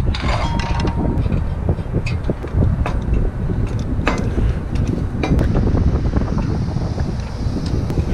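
Wind buffeting the microphone with a steady low rumble, with scattered light clicks and knocks from gloved hands working on a steel antenna mount and its hardware.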